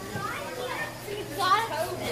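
Background voices of children and other people talking, with the loudest high-pitched call about one and a half seconds in.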